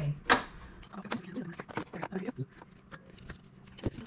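Irregular small clicks and knocks of cable plugs being pushed into the connectors of a Bambu Lab P1P printer's toolhead, the hotend's thermistor and fan leads being connected. The sharpest click comes about a third of a second in.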